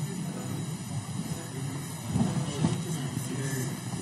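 Murmur of many people talking at once in a large chamber, with no single voice standing out and a few louder moments about halfway through.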